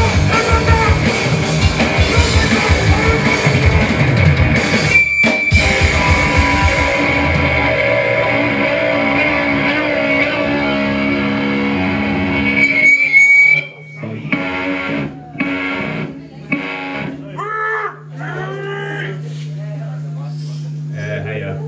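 Punk band playing live and loud on drum kit, electric guitar and shouted vocals. About seven seconds in the drums drop out and the guitar rings on until a brief high whistle of feedback near thirteen seconds ends the song. After that there is a steady amplifier hum with scattered shouts.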